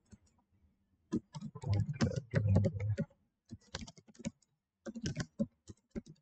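Typing on a computer keyboard: runs of quick keystroke clicks starting about a second in, broken by short pauses.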